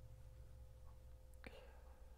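Near silence: room tone with a steady low electrical hum and a faint thin tone, and one faint short mouth or breath sound about one and a half seconds in.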